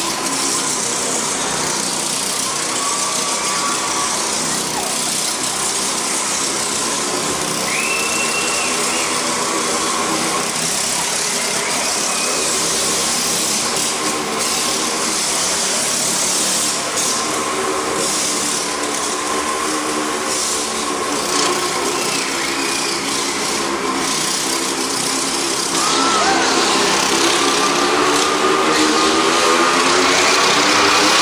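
Motorcycle and go-kart engines running flat out as they circle the vertical wooden wall of a wall-of-death drum, their pitch rising and falling with each lap. The sound grows a little louder near the end.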